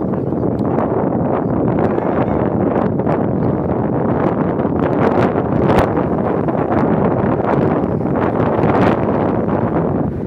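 Wind buffeting the microphone in a loud, steady rumble that covers everything else. Two brief sharp sounds stand out, one a little past halfway and one near the end.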